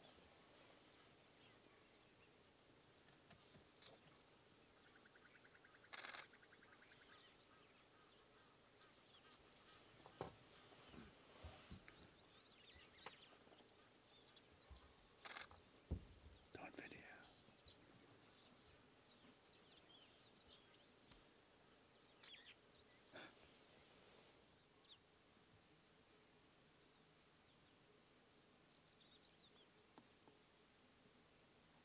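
Near silence in the bush: faint, scattered bird calls, with a few brief soft knocks around the middle.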